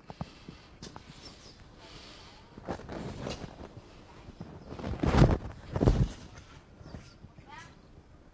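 Footsteps on paving and the swish of a silk kung fu uniform during a xingyiquan cannon-fist (pao quan) movement, with two louder thuds about five and six seconds in.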